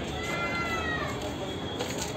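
A single high-pitched cry lasting about a second, falling slightly in pitch, over steady background noise.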